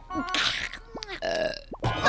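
Cartoon burp from the little dinosaur character after eating stew, over light background music.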